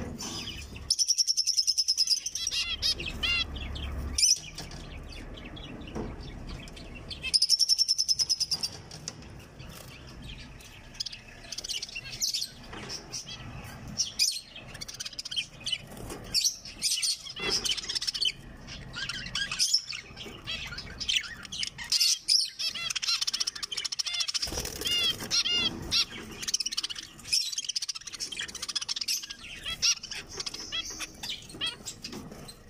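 A flock of caged zebra finches calling and singing: many short chirping calls overlap throughout. Two loud, repeated song phrases come about a second in and again around eight seconds in. Wings flutter as birds hop about the cage.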